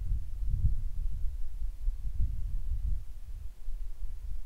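Low, uneven rumble with soft irregular thumps on the microphone, the kind made by wind or by handling a moving phone, with nothing else heard above it.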